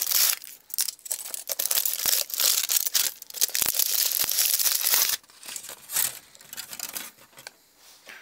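Foil wrapper being crinkled and torn off a chocolate Easter egg, busy and crackling for about five seconds, then only a few faint rustles.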